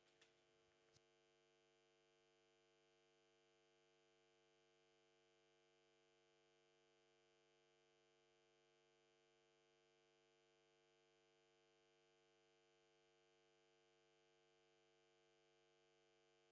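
Near silence, with only a very faint steady hum in the audio feed.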